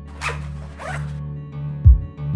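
A zipper pulled twice in quick rasping strokes, over a music track with a deep bass beat near the end.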